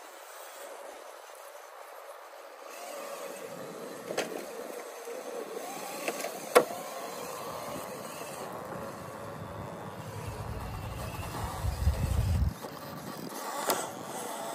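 Small electric motor and geared drivetrain of an RC rock crawler whirring steadily as it creeps over rock. Sharp knocks of the tires and chassis on the rock come twice, the loudest about six and a half seconds in. A low rumble follows for a couple of seconds near the end.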